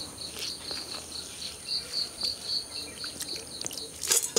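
An insect chirping steadily in short, even pulses, about four a second, with faint wet scraping and ticks of wheat grain being scooped in a stone grinding basin.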